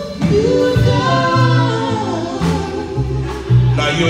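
Gospel group singing held, sliding notes in harmony, backed by electric bass, drum kit and keyboard, with a few drum hits in the second half.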